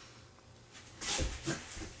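A man's sharp, breathy exhale about a second in, followed by soft thuds of his body on the floor as he drops from a push-up position to his knees.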